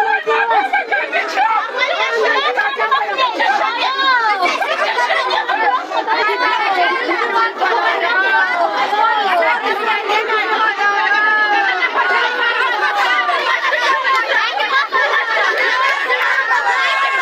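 Many voices at once: a crowd of people talking and calling out over one another in a packed room, with no single speaker standing out.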